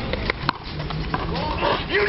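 A handball in play in a one-wall rally: a few sharp smacks of the ball off hand, wall and court, the loudest about half a second in, with spectators chattering.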